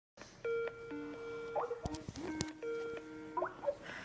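Skype incoming-call ringtone: a short electronic tune of steady stepped tones and quick rising chirps, repeating about every two seconds. A few sharp clicks come about halfway through.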